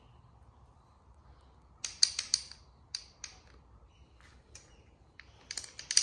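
Sharp metal clicks and clinks from a small engine's piston and connecting rod being handled, the rod worked back and forth on its gudgeon pin to check it for play: a few clicks about two seconds in, scattered single ones, then a quicker, louder run of clicks near the end.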